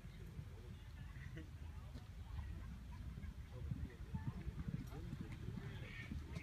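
Faint hoofbeats of a show-jumping horse cantering on a sand arena, with irregular low thuds over a steady low rumble and faint distant voices.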